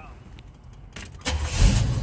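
A car engine starts about a second in, with a short loud burst of cranking and catching, then settles into a steady low running drone.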